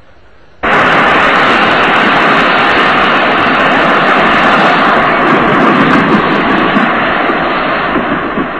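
Loud, steady vehicle noise, like an engine running, that cuts in suddenly about half a second in and begins to ease off near the end.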